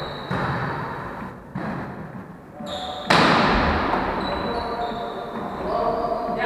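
Volleyball being struck during a rally in an echoing gym. There are three sharp hits about a second or so apart, the third, about three seconds in, the loudest, each trailing off in the hall's reverberation. Players' voices can be heard under it.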